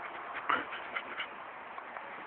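Dog eating blackberries straight off a bramble: a few sharp snaps and chomps, the loudest about half a second in, with leaves rustling.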